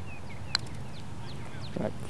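A single sharp click of a putter striking a golf ball about half a second in, with faint bird chirps behind it.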